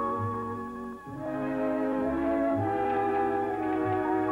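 Orchestral background music with held brass chords. The music dips briefly about a second in, then a new chord comes in and builds.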